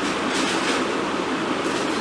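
Steady rushing background noise in the room, with soft fabric rustling as clothes are lifted and set down.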